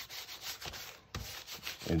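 Hands rubbing and smoothing a sheet of brown kraft paper laid over a collagraph print, a dry scraping rustle in quick repeated strokes with a short pause about a second in. The paper is being hand-rubbed to press the print by hand without a press.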